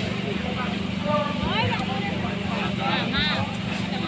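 Indistinct voices of people talking close by, in short intermittent snatches, over a steady low hum.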